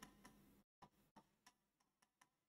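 Near silence with a few faint, separate ticks: a stylus tapping on a touchscreen teaching board while a word is handwritten.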